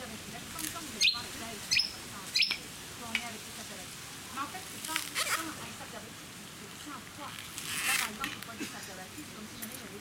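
Coconut husk being forced apart on a pointed stake: three sharp cracks in quick succession about a second in, then a longer tearing of fibres near the end, over low chatter from onlookers.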